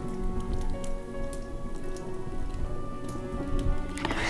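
Fire crackling with many small irregular pops, over soft background music of held tones.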